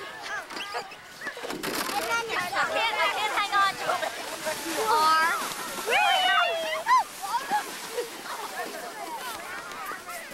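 Excited children's voices, high-pitched shrieks and calls rising and falling in pitch, loudest about halfway through, over the hiss of a sled sliding on snow.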